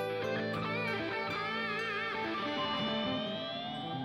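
Electric guitar playing a slow lead melody with the band: long sustained notes with wide vibrato, then a slow bend up in pitch through the second half.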